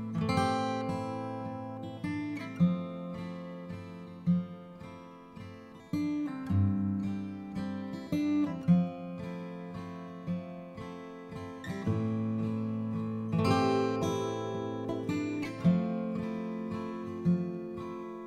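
Background music: an acoustic guitar strumming chords, with a new strum or chord change every second or two and no singing.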